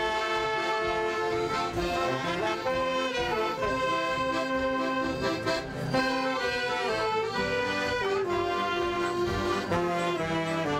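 Live music led by an accordion, playing held chords and a melody that moves from note to note.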